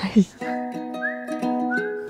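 Light background music: a whistled tune over plucked strings, with short upward slides about a second in and near the end.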